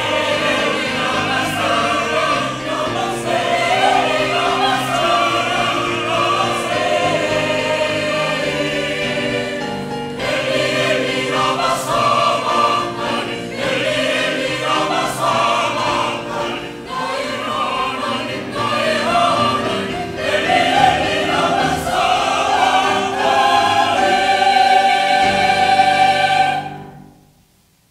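A mixed choir of men's and women's voices singing together, with a male soloist singing among them; the singing grows louder toward the end.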